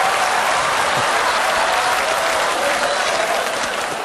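Studio audience applauding, a dense steady clapping with crowd voices mixed in, easing off slightly toward the end.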